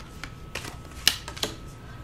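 Tarot cards being handled and dealt from the deck onto a tabletop: a few light clicks and taps, the sharpest about a second in.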